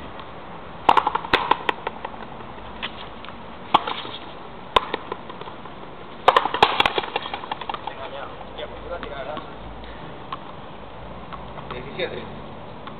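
Frontenis rally: a hard ball cracking off racket strings and the frontón's concrete front wall, sharp smacks with a short echo. They come in bursts, several at once about a second in, single hits a little later, and a quick run of hits partway through.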